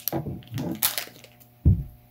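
Plastic toy packaging crinkling and crackling as it is handled, followed by a single dull thump near the end.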